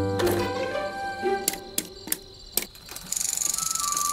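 Cartoon music dies away in the first second. A few separate sharp clicks follow, then about three seconds in a fast, even ticking starts: a tandem bicycle's freewheel as the bike rolls up.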